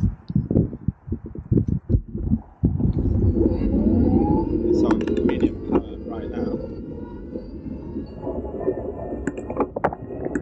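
Wind buffeting a handlebar-mounted microphone on a moving bicycle, with uneven gusts at first, then steady rushing noise from about two and a half seconds in. Under it, a faint whine rises slowly in pitch as the e-bike conversion kit's hub motor pulls the bike up to speed.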